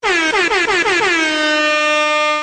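Meme air-horn sound effect: a rapid run of short blasts, each dipping in pitch, then one long held blast.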